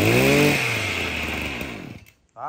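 The small two-stroke engine of an ECHO 21 brush cutter running, with one quick rev up and back down near the start, then slowing and cutting out right at the end.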